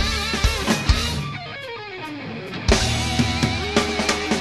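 A live hard rock band plays electric guitar, bass and drum kit. About a second in, the drums and bass drop out and a lone guitar plays a falling run. The full band comes back in with a loud hit about a second and a half later.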